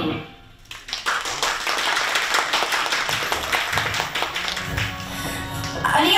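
The song's last held chord cuts off at the very start, and about a second later an audience starts applauding, a dense patter of hand claps that keeps going for about five seconds.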